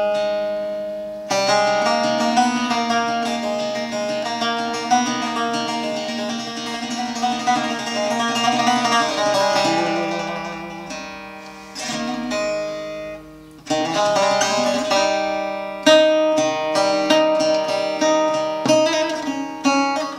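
A kopuz, a long-necked Turkic lute, strummed and plucked in a fast, busy melody over the steady drone of its open strings. The playing thins out a little past halfway, with a short break, then picks up again.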